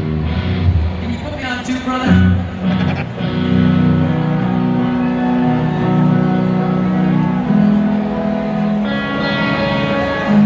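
Solo electric guitar played live through a stadium PA, long chords held and left ringing, changing every few seconds.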